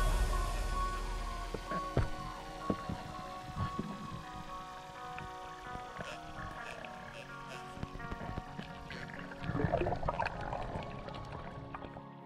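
Background music of held, sustained tones, gradually fading out after a louder electronic passage.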